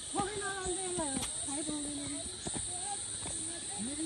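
High-pitched voices in short, drawn-out calls and words, over a steady high hiss, with light footsteps on stone steps.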